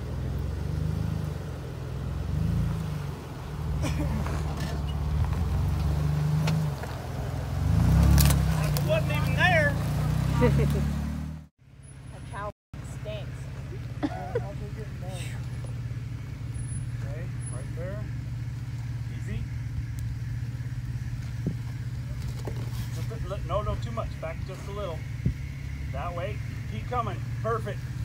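Jeep Wrangler JK engine running at crawling speed, swelling and easing as the Jeep works over rocks and a culvert pipe. After a break about 11 seconds in, another Wrangler's engine runs at a steady low idle-like hum, with voices calling in the background.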